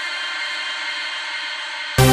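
Electronic dance music in a breakdown: a thin, sustained synth chord held steady with no bass or drums, until the full beat with heavy bass comes back in suddenly at the very end.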